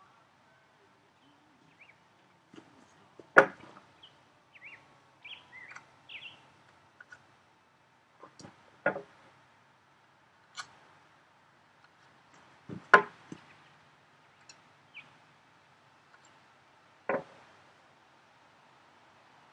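A handful of sharp knocks of wood on wood, a few seconds apart, the loudest about three and a half and thirteen seconds in, as tools are set down and moved on a planed pine board while it is checked for flat.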